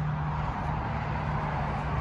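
Steady low hum over a low rumble and faint hiss: continuous background noise with no distinct event.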